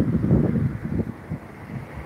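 Wind buffeting the phone's microphone: a low, irregular rumble, louder in the first second, then easing off.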